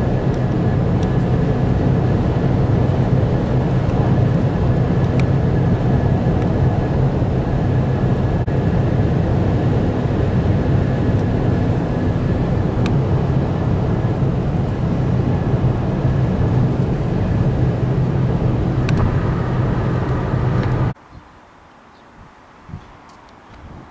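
Steady cabin noise of a car driving at motorway speed, heard from inside the car as a loud, even low drone. It cuts off abruptly about a second before the end.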